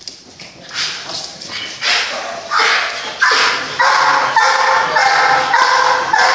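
Large dark-coated protection dog barking repeatedly while held on a leash, aimed at a decoy in a padded suit. The barks start about a second in, grow louder and come about every half second.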